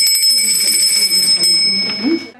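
School bell ringing, signalling the start of a lesson: a steady, high, metallic ring that begins suddenly and stops after about two seconds. Voices are faintly audible underneath.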